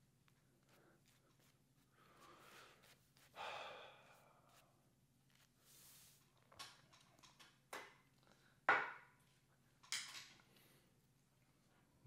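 Quiet, scattered wet swishes of a shaving brush working lather over a bearded face, a longer stroke a few seconds in and several short, sharper strokes in the second half.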